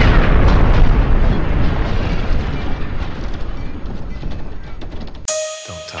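Explosion sound effect: a loud blast rumbling and slowly fading, cut off abruptly about five seconds in. Sustained pitched notes of the song's intro music follow.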